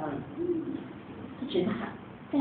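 Speech only: a person talking into a microphone.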